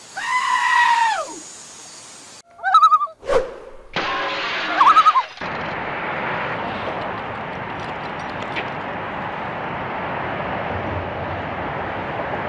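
A sheep bleating: one long call that falls in pitch at its end, followed by two shorter wavering cries. About five seconds in, a steady even noise takes over.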